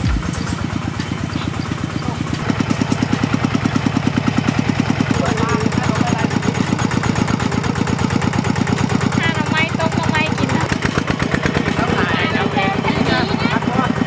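Single-cylinder diesel engine of a two-wheel walking tractor running with a rapid, even chug. It gets louder about two seconds in.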